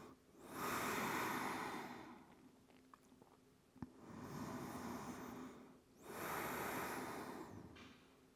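A woman's slow, deep breaths in child's pose: three long breath sounds of about two seconds each with pauses between them. A faint click sounds about halfway through.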